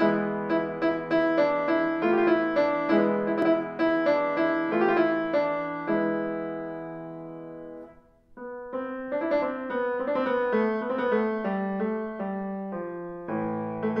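Steinway & Sons grand piano being played: rhythmic, accented chords about two a second. About six seconds in, a held chord fades away, and after a brief break near eight seconds the playing resumes.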